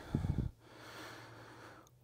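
A short breath between spoken phrases, then faint room tone.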